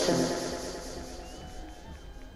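Sparse techno breakdown with no beat: a spoken vocal sample, "closer", trails off in a long echo over a quiet background.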